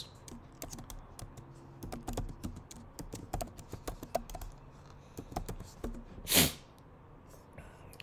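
Computer keyboard typing: a run of irregular keystroke clicks as a word is typed. A short, loud hiss about six seconds in.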